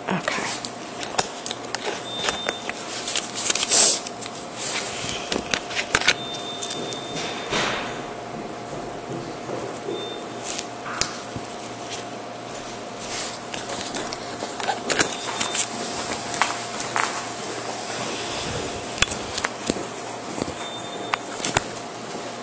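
Handling noise on a police body-worn camera's microphone: cloth rubbing over it with scattered clicks and knocks, under a faint steady hum and a few short high beeps.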